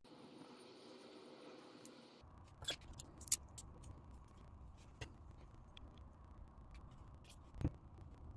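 A few faint, scattered clicks and small taps from handling a dimple lock cylinder as its plug is drawn out of the housing, the sharpest a little past three seconds in and just before the end.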